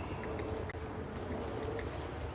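Steady outdoor background rumble with a faint hum and a few faint ticks.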